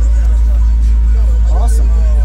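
Loud, steady deep sub-bass from a car audio system playing, with voices faintly over it.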